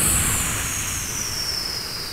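A long, frustrated sigh blown into the microphone: a breathy hiss with a rumble from the breath hitting the mic and a high edge that slowly falls in pitch, fading gradually.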